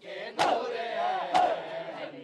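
A crowd of men doing matam, striking their chests in unison: two sharp slaps about a second apart, over a chanted mourning lament from many voices.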